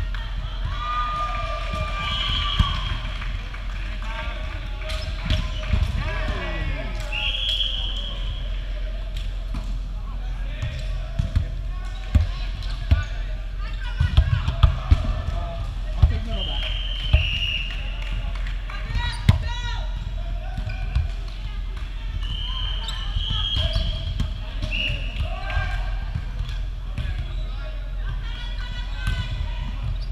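Indoor volleyball play in a large gym: the ball being struck, sneakers giving short high squeaks on the hardwood court, and players' voices calling out. A run of sharp hits comes about halfway through.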